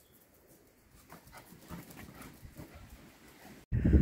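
Faint sounds of a small white terrier moving about on a tiled porch, with soft scuffs and breathing. A short, loud, low thump comes near the end.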